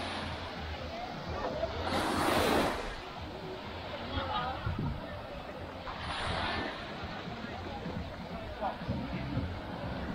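Small waves washing up onto a sandy beach, swelling about two seconds in and again around six seconds, with the chatter of people nearby.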